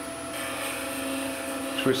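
Wood lathe running with a steady hum; from about a third of a second in, a light hiss joins it as the round skew chisel's bevel rubs on the spinning spindle blank, not yet cutting.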